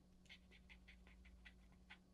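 Faint scratching of a pen writing on a paper label strip: a quick run of short, irregular pen strokes.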